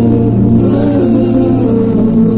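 A band performing live through a stage PA: strummed acoustic guitar with several voices singing.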